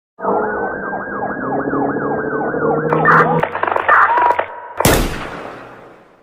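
Siren sound effect in a logo sting, wailing quickly up and down over steady lower tones, then a few clicks and short tones, ending with one loud hit about five seconds in that rings and fades away.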